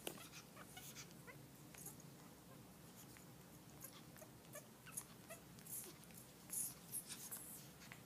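African grey parrot making soft scattered clicks and short chirps, with a louder cluster of sharp calls or clicks about six and a half seconds in, over a faint steady room hum.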